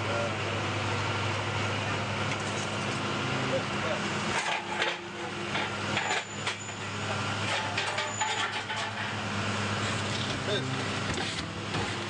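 Steady low hum of a vehicle engine idling, under indistinct voices, with a few knocks and scuffles about four to nine seconds in.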